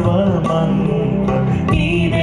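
Devotional song: a voice singing held, gliding notes into a microphone over sustained instrumental accompaniment.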